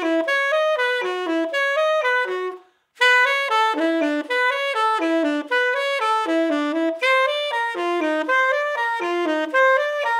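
Unaccompanied tenor saxophone playing a short, repetitive jazz figure over and over, with a brief break for breath a little before three seconds in.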